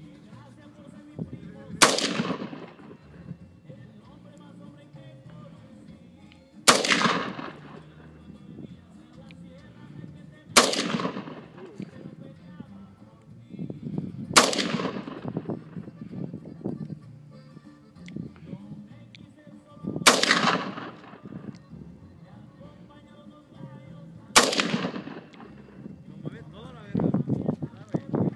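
AK-pattern rifle firing six single aimed shots, spaced about four to six seconds apart, each shot followed by a ringing echo lasting about a second.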